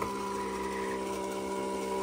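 A 1950s W Toys Fishing Bears battery-operated tin savings bank running, its mechanism whirring with a steady, even hum as the father bear works his fishing rod.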